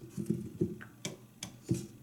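A few short knocks and clicks of objects being handled on a work table, irregularly spaced, the sharpest about a second in.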